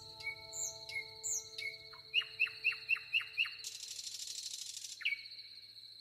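Wild birds singing and chirping, with a run of five quick falling notes about two seconds in and a buzzy trill from about three and a half to five seconds, over a steady high thin note; the last piano notes fade out in the first few seconds.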